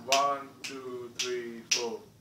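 Finger snapping in a steady beat: four crisp snaps about half a second apart, each followed by a short pitched tone that fades out.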